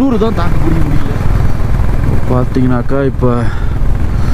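Motorcycle riding at road speed: steady engine rumble under heavy wind rush on the microphone.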